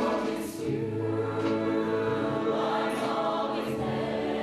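Mixed-voice show choir singing long held chords, backed by a live band with brass.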